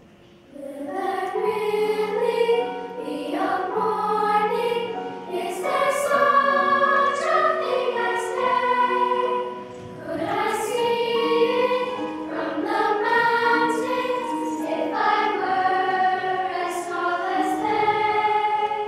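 Large children's choir singing in unison with piano accompaniment, the voices entering about half a second in, with a short breath break about ten seconds in.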